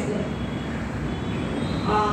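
Steady background noise of a large room, an even hiss and rumble with no clear rhythm, before a woman's voice starts again near the end.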